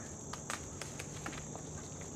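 Steady, high-pitched chorus of insects, with scattered light clicks and rustles as a corn plant is grabbed at its base and pulled.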